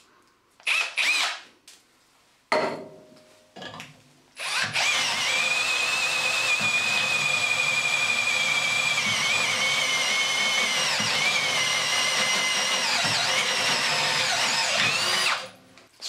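Cordless drill driver turning a stepped cutter through steel plate: after a few short starts, a steady high whine with cutting noise that runs for about eleven seconds, its pitch sagging a little under the heavy load, then stops abruptly.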